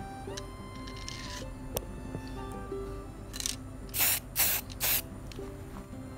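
Aerosol spray-paint can giving four short bursts in quick succession a little past halfway, over steady background music.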